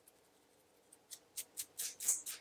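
Scratching on a dry, flaky scalp to loosen dandruff. After a nearly quiet first second come about four quick, faint, high-pitched scraping strokes.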